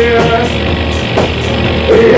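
Live heavy psychedelic rock band playing loud with electric guitars, bass guitar and drums, with held guitar notes over a steady bass and regular cymbal hits.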